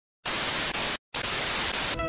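TV static hiss, the white-noise sound of a snowy, off-air analogue screen, starting a moment in and cut by a brief dropout about a second in.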